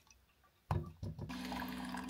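Keurig single-serve coffee maker brewing: a steady pump hum with coffee streaming into a ceramic mug, starting suddenly about two-thirds of a second in after near quiet.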